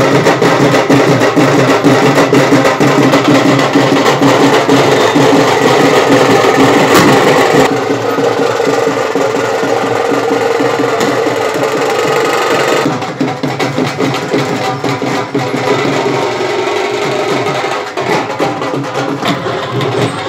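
Procession drum band playing: dhol and other hand-carried drums beaten in a fast, dense rhythm, with pitched music sounding over them. The level drops about eight seconds in and again near thirteen seconds.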